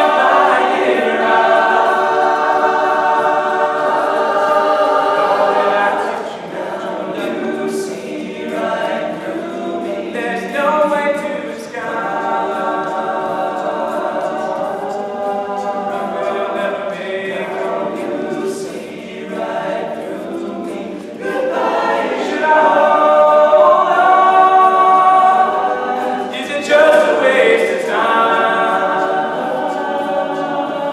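All-male a cappella group singing in close harmony, sustained chords in long phrases with short breaks between them, swelling louder a little past two-thirds of the way in.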